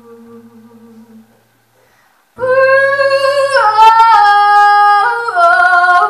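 Quiet wordless humming fades out about a second in. After a short silence, a woman's voice comes in loudly at about two and a half seconds, singing long held notes without words that step down in pitch twice.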